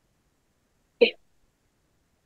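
A single brief vocal sound from a person, about a second in, lasting a fraction of a second.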